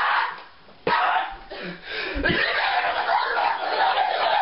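A teenage boy screaming and yelling in a tantrum, in bursts, with a thump a little after two seconds as he throws himself back onto the bed.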